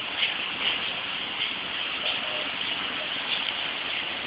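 Steady hiss of running water from an outdoor water feature.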